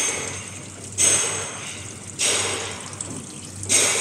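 Automatic chain link fence machine running through its weaving cycle: a burst of noise starts suddenly and fades, four times, about every second and a quarter. It is a test run to check the wire's cutting position after adjustment.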